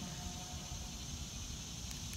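Steady high-pitched drone of cicadas (locusts) in the trees, over a low rumble of wind on the microphone.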